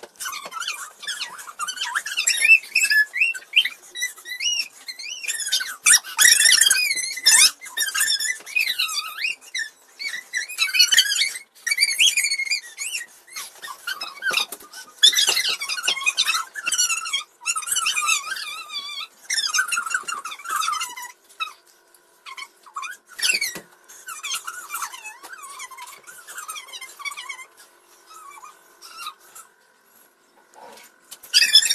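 High-pitched squealing and shrieking voices in quick, irregular bursts during rough play. They thin out and grow softer in the last third.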